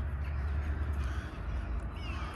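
Crows cawing over a steady low rumble.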